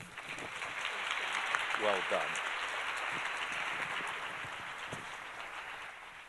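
Audience applauding: the clapping builds within the first second, holds steady, then slowly tapers off toward the end.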